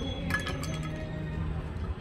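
Light metallic clinks with a brief ringing tone about a third of a second in, over a steady low hum of outdoor background noise.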